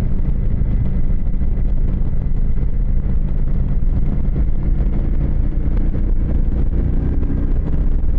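Motorcycle engine running steadily at cruising speed, heard from the rider's seat, with wind rushing over the microphone.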